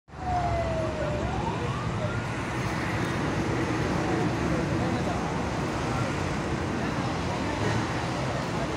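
Steady outdoor din with indistinct voices and a few faint tones that slide down and up in pitch.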